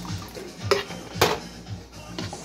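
Two sharp clanks, about half a second apart, of a tin can knocked against a metal cooking pot as tomato sauce is emptied into it, over background music with a steady beat.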